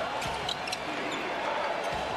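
Basketball being dribbled on a hardwood court, a couple of bounces in the first half-second, over steady arena noise.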